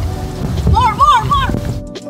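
Steady rain noise with a rumbling low end. Partway through, a few short, high voice calls rise and fall in quick succession, and near the end the noise cuts off and background music begins.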